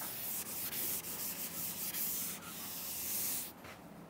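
Chalkboard eraser rubbed back and forth across a chalkboard in a run of repeated strokes, wiping off chalk writing; it stops about three and a half seconds in.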